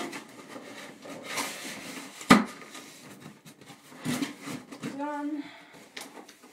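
Cardboard box being handled and rubbed by hand, with one sharp knock a little over two seconds in.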